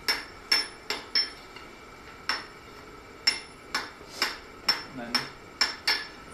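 Hand hammer striking red-hot iron on an anvil while forge welding the folded layers of a lock bolt's nose into one solid mass. About a dozen sharp blows come at an uneven pace, with a short pause about a second in, and each blow leaves a brief high ring from the anvil.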